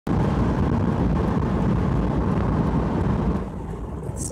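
Steady road and engine noise heard inside a moving car's cabin, easing slightly near the end.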